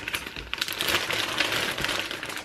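A thin plastic mailing bag crinkling and crackling as it is handled and turned over in the hands, a dense run of fine crackles.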